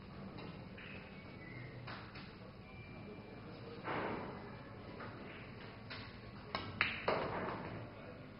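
A pool shot: the cue tip strikes the cue ball, the cue ball clicks sharply into an object ball, and a third knock follows as the struck ball reaches the pocket, all within about half a second near the end.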